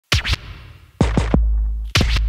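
Intro music sting built from record-scratch effects: two quick scratches at the start, three more about a second in, then a held deep bass note.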